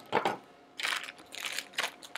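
Clear plastic packaging bags crinkling in several short bursts as small phone accessories are handled and taken out of them.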